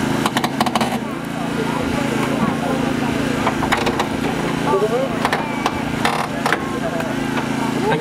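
Small engine of a hydraulic rescue-tool power pack running steadily, with a few sharp cracks as hydraulic cutters bite through the boot lid's hinges and struts of a car.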